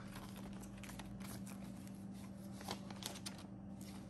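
Paper banknotes being handled and leafed through: soft rustling with many short crinkles and flicks of the bills.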